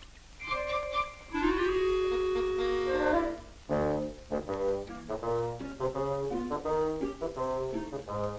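Orchestral film score led by brass: held chords with a rising swell in the first few seconds, then, from about halfway, a run of short, detached notes at about three a second.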